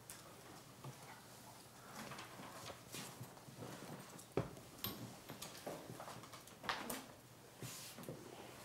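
Faint scattered clicks, small knocks and rustles of hands at work while acupuncture needles are being taken out, with one sharper click about four and a half seconds in.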